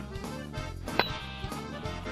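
Swing-style background music with accordion. About a second in, a single sharp click rises above it: a golf club striking the ball on a full swing.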